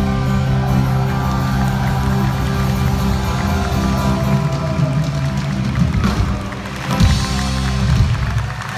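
Live rock band playing the instrumental close of a song: electric guitars holding sustained chords over drums, with sharp hits near the end.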